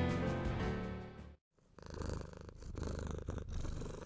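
Background music fading out and stopping about a second and a half in, followed by a cat purring, swelling and easing in rhythm with its breaths.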